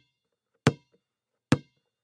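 Two sharp knocks, a little under a second apart, each with a brief ringing tail.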